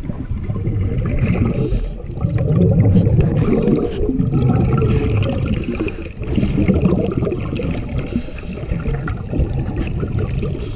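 Underwater bubbling and gurgling, the sound of a scuba diver's exhaled air, coming in surges that swell and ease about every two seconds.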